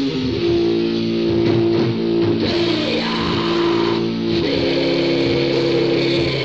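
Raw black metal band rehearsal taped on cassette: distorted electric guitar playing sustained chords over bass guitar, lo-fi with little treble.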